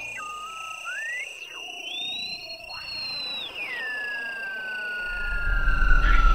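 Electronic music: a single pure, theremin-like synth tone sliding and stepping in pitch, climbing to a high held note about two seconds in, then dropping and gliding slowly downward, over steady high-pitched tones. A deep bass rumble comes in near the end.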